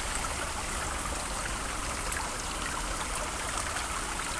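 Water running steadily over rocks in a small backyard pond stream.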